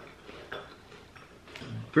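Faint crunching of a small crunchy Lotte Kancho chocolate-filled biscuit being chewed, in short scattered bits. Near the end a low hummed voice sound begins just before speech resumes.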